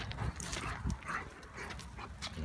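A dog whimpering faintly once or twice, with light scuffling of paws on gravel.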